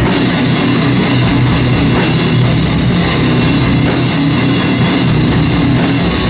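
Metal band playing live and loud: drum kit, distorted electric guitar, bass guitar and a bowed cello in one dense, steady wall of sound.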